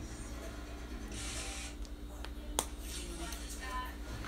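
Small plastic clicks from handling a lip balm tube, the loudest a single sharp click a little past halfway, over a steady low hum.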